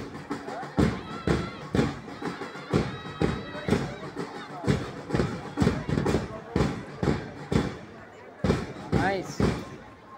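A drum beats a steady marching rhythm, about two beats a second, pausing briefly near the end before picking up again. A faint piping melody and crowd voices sit under it.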